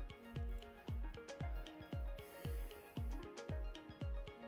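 Background music with a steady beat of low drum thumps under held notes.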